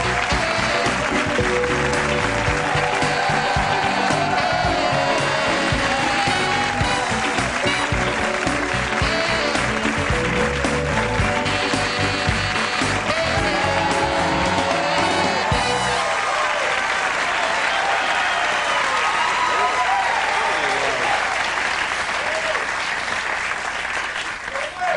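Studio audience applauding and cheering over the house band's walk-on music, a tune with a steady bass and drum beat. About two-thirds of the way through, the band's bass and drums drop out and the applause and cheering carry on alone.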